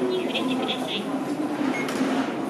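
Electric commuter train at a station platform, heard under people's voices.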